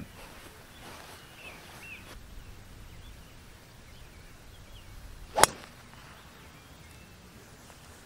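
A single sharp crack of a golf driver striking the ball off the tee, about five seconds in, over faint outdoor background.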